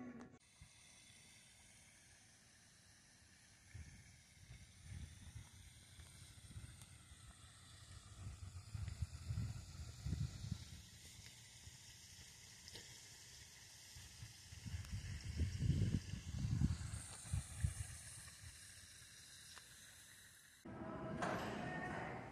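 Outdoor ambience over a steady high hiss, with wind buffeting the phone's microphone in irregular low rumbling gusts, strongest a few seconds before the end. Near the end it cuts abruptly to indoor background music.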